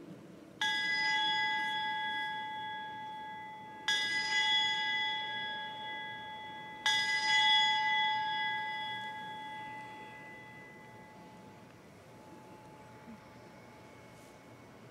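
A bell struck three times, about three seconds apart, each strike ringing on and fading slowly. It is rung at the elevation of the chalice after the words of consecration at Mass.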